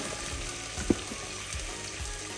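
Faint steady sizzle from a steel pot of mutton and yogurt cooking on the stove, with one light tap a little under a second in.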